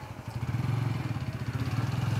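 A small engine running steadily at idle: a low, evenly pulsing hum.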